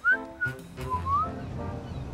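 A cheerful whistle of three short notes, the first and last sliding upward, over light background music.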